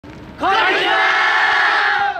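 A yosakoi dance team shouting together in unison. It is one long held call that starts about half a second in, rises at the very start, then holds steady.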